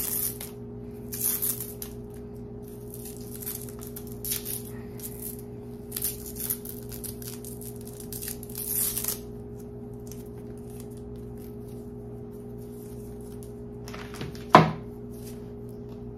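Rustling and crinkling of a laptop charger's coiled cable and tie being handled and unwound, in short bursts over the first nine seconds. A single sharp click sounds about fourteen and a half seconds in, over a steady low hum.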